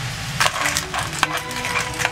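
A metal spoon clattering against Manila clam shells and the pan as the clams are stirred: a quick run of sharp clicks starting about half a second in.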